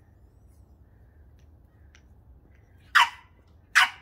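French Bulldog puppy barking twice, two short sharp yaps a little under a second apart near the end.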